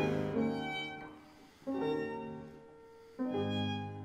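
Violin, cello and fortepiano (a copy of a Conrad Graf Viennese piano) playing classical chamber music. A loud held chord fades away, then two separate chords about a second and a half apart each sound and die away.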